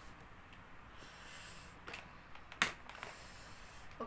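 A person breathing out faintly through the mouth, with a short sharp sound about two and a half seconds in that is the loudest event. She is reacting to the burn of extremely hot chili potato chips.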